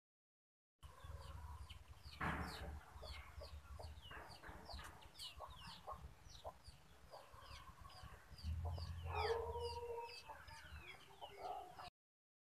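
Faint outdoor birdsong: many small birds chirping in quick, high notes throughout, and a chicken calling about nine seconds in, over a low rumble.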